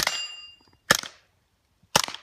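Suppressed .22 LR rifle shots (SilencerCo Spectre II), three about a second apart, each a short sharp crack rather than a loud bang. The shots are followed by a brief metallic ring as they strike steel plate targets.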